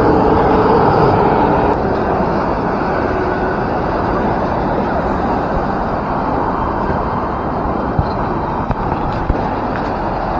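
Steady road traffic noise from the multi-lane road below, a constant rush of passing cars, a little louder in the first second or two. A few short sharp clicks come near the end.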